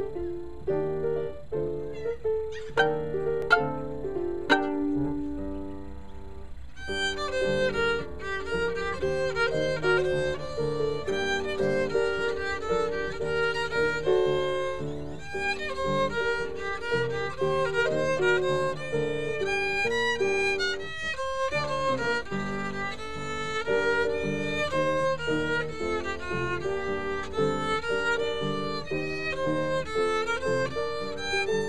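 Violin played with piano accompaniment. The violin line sits over lower piano notes, and the music becomes fuller and brighter about seven seconds in.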